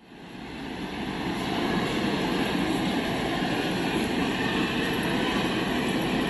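Steady background noise in a rail station concourse, fading in over the first second and then holding even.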